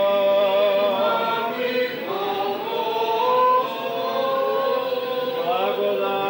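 Choir singing Serbian Orthodox liturgical chant, several voices together in slow, long-held notes.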